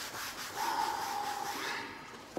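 Cardboard rubbing and scraping as a wrapped book is slid out of a shipping box, with a steady squeaky friction note for about a second in the middle.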